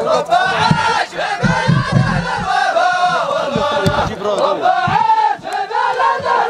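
A large group of men chanting a sung verse together in unison, as part of a traditional Arabian line dance, the phrases rising and falling in arcs.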